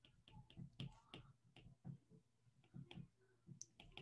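Near silence broken by faint, irregular clicks of a stylus tapping on a tablet screen while handwriting.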